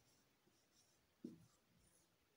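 Faint scratching and squeaking of a marker pen writing on a whiteboard, with a short low thud about a second in.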